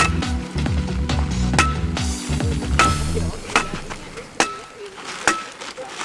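Background music that stops about halfway through, with several sharp single clicks of a hand staple gun driving staples through fabric footing form into wooden 2x4 screed boards, about one a second.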